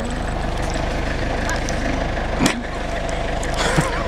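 Steady low outdoor rumble with faint voices behind it, and one sharp knock about halfway through.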